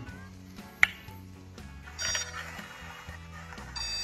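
Zircon stud finder in metal-scan mode detecting rebar in a concrete slab: a faint electronic tone comes in about halfway and a steady high-pitched beep sounds strongly near the end. A single sharp click about a second in.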